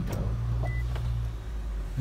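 Steady low motor hum inside the cabin of a 2019 Infiniti QX50 just after its engine is started, easing off near the end, with one short high beep about a second in.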